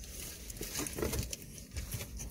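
Close-up eating sounds: a mouthful of breakfast burrito being chewed, with small irregular clicks and crackles from the mouth and the paper wrapper.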